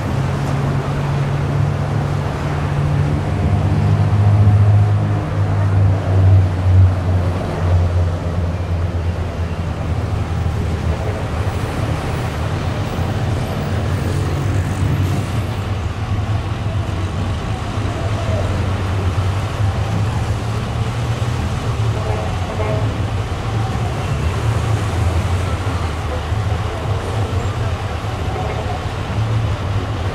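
Low engine rumble, loudest between about two and eight seconds in, over a steady outdoor background with faint voices.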